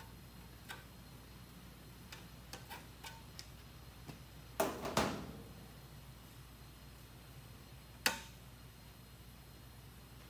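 Sheet-metal plate being handled and test-fitted over the radiator support: a few light clicks and taps, then a couple of louder clanks with a short ring about halfway through, and one sharp clank near the end.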